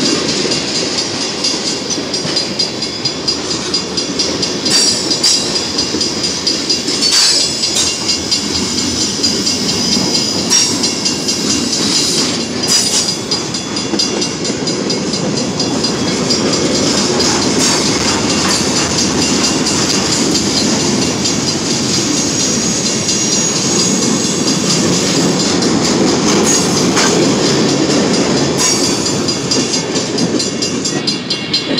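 Freight cars of a long manifest train rolling steadily past close by: a continuous rumble of steel wheels on rail, with occasional sharp clicks as the wheels pass over rail joints.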